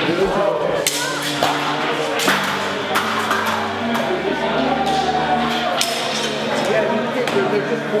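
Practice weapons clashing and striking shields in sword-and-shield and spear sparring: a string of sharp cracks and knocks at irregular intervals, over the voices of people in the hall.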